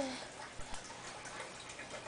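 Faint scattered ticks and small clicks as a toddler's hands grab rice off a plate.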